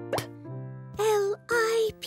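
Children's cartoon music: a held chord, with a quick rising pop sound effect a moment in. This is followed by two short, wavering voice notes in the second half.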